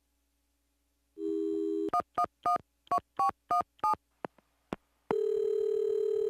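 Telephone handset: a dial tone, then seven touch-tone keypresses dialling a number, each a short two-tone beep, followed by a longer steady tone as the call goes through.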